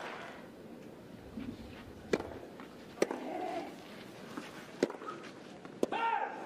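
Tennis ball knocks, a few sharp separate thuds about a second or two apart, from bounces and racket strikes, over a low crowd hush.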